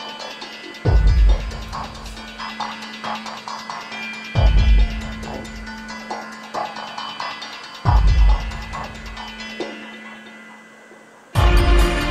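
Dark ambient soundtrack: deep bass booms pulse about every three and a half seconds over a steady humming drone, with scattered clicks and crackles. The sound thins out and grows quieter just before the fourth boom near the end.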